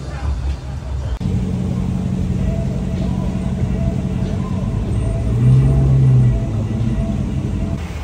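Street traffic: the engines of passing cars and pickup trucks make a steady low drone that sets in about a second in and swells briefly past the middle.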